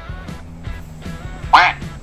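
A recorded duck quack from a phone soundboard app sounds once, about one and a half seconds in, over background music. The quack serves as the neutral stimulus in a classical-conditioning demonstration.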